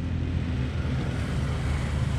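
A steady low mechanical hum, with no distinct clicks or knocks standing out.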